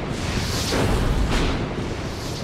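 Logo sting sound effect: a deep, noisy rumble like thunder, with brief whooshes about half a second and a second and a half in.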